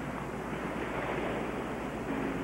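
Steady wash of ocean surf with wind, unbroken and even.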